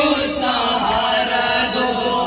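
A crowd of men chanting a nawha lament together in a long sung line. There is a sharp strike of hands on chests (matam) right at the start.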